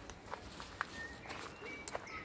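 Quiet footsteps on a dirt path, with a few faint, scattered clicks.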